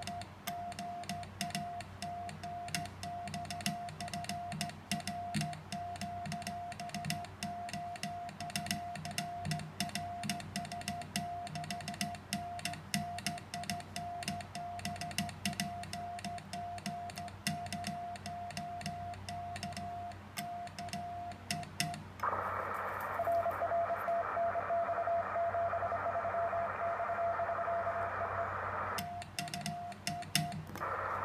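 Morse code sent by hand with a paddle key: the transceiver's sidetone beeps in dots and dashes, with the paddle clicking along. About 22 seconds in the radio switches to receive, and hissy band noise with a weak Morse signal in it takes over. Near the end it switches back to the keyed tone.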